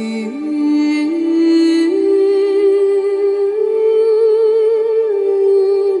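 A woman singing a slow melody in long held notes that climb step by step, with a wavering vibrato on the highest notes about two thirds of the way through, then dropping back a step near the end.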